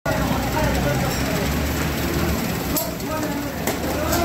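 Busy market food-stall ambience: indistinct voices over a steady low rumble, with a couple of sharp metallic clicks of a steel ladle against the karahi wok as mutton karahi is stirred, the second near the end.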